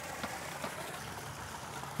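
Quiet, steady outdoor background hiss with a couple of faint light ticks early on.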